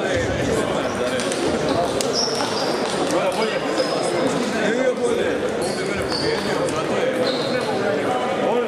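Table tennis balls clicking off tables and bats at several tables, echoing in a large sports hall, over a steady murmur of many voices. A few short high squeaks, from shoes on the hall floor, come through at intervals.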